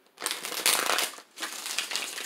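A tarot deck being riffle-shuffled by hand: a fast run of card flicks as the two halves interleave, then after a brief gap a second, shorter run as the cards are bridged back together.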